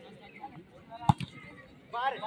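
A volleyball struck by hand: one sharp slap about a second in, with a fainter second tap just after it.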